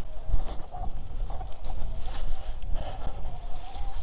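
Mountain bike rolling over a rough, muddy trail: tyres and frame knocking and rattling over bumps, with wind rumbling on the microphone and a thin wavering whine that rises in the last second.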